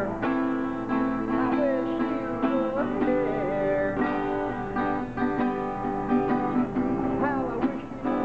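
Acoustic guitar played live, chords strummed in a steady rhythm, with a melody line over them that slides up and down in pitch.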